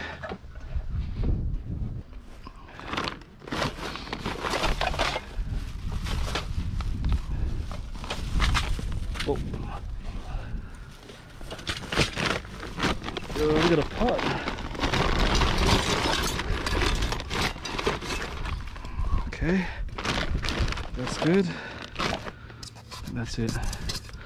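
Junk items being handled and moved about: repeated knocks, clatters and rustles, with a denser stretch of rustling and scraping about two-thirds of the way through.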